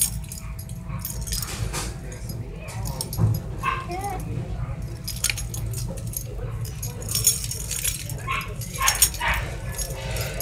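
A kitten mewing in short, small cries a few times, among clicks and rustling from play.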